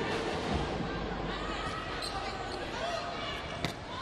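Indoor arena crowd noise with scattered voices during a volleyball rally, and one sharp smack of a hand hitting the volleyball about three and a half seconds in.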